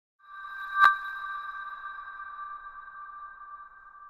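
Intro chime under the church's logo: a ringing tone that swells in, peaks in a bright strike just under a second in, then rings on as two steady notes and fades away.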